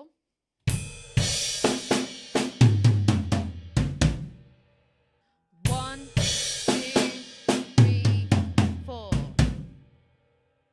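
Drum kit playing the same one-bar fill twice, with a second's pause between. Each pass opens with bass drum and a crash cymbal, then runs through snare and tom strokes down from the high tom to the floor tom.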